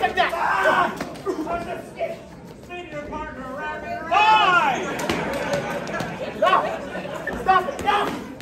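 Voices yelling and chattering in a large hall beside a wrestling ring, with a few short sharp knocks in the later seconds.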